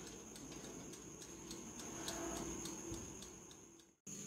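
Faint, regular ticking, about four ticks a second, from the mechanical timer of an oven toaster grill running while the oven bakes.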